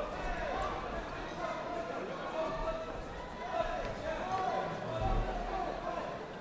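Indistinct shouting voices from the spectators and the fighters' corners, with dull thuds of kicks and footwork on the ring canvas; a deeper thump about five seconds in.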